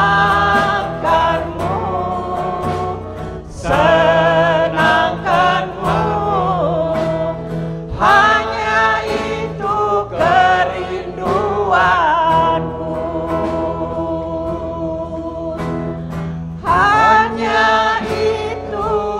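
A congregation of elderly people singing a worship song together, in phrases of a few seconds with long held notes.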